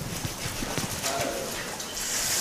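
Mineral water poured from a plastic bottle into a plastic tub of ice: a steady splashing pour with a few light clicks.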